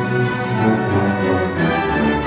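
An orchestra playing a passage of held, overlapping notes, with bowed strings among them.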